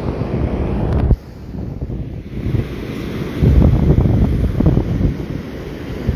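Wind buffeting a phone microphone over the wash of surf breaking on a beach. The level drops suddenly about a second in, and the wind gusts hardest in the second half.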